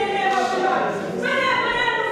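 Church congregation singing together unaccompanied, in long held notes.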